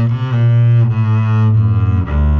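Upright double bass played with a bow, slow sustained notes that change pitch twice, about a third of a second in and again near the end.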